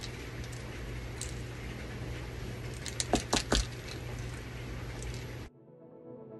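Small needle-tip bottle of alcohol ink being shaken, its mixing ball clicking inside: one click about a second in, then a quick run of about four clicks around three seconds in, over a steady room hum. Soft piano music takes over near the end.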